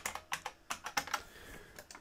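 Computer keyboard typing: a quick run of keystrokes, most of them in the first second or so, then a few scattered ones.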